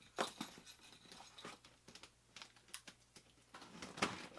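Faint, scattered ticks and scrapes of a utility-knife blade cutting the packing tape on a cardboard box, with a sharper click about a quarter second in.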